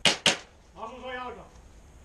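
Two sharp cracks of close airsoft fire about a quarter second apart, followed by a short wordless call from a player.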